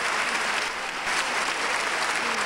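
Opera house audience applauding: steady, dense clapping with no music or singing over it.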